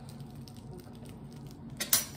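Faint handling noise, then a single sharp click near the end as a small plastic sprinkles container is worked at to get it open.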